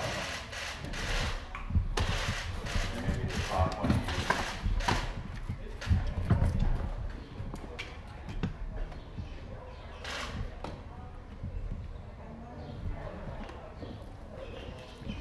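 Indistinct voices of people near the camera, no words clear, mixed with scattered knocks and low thumps that are louder in the first half.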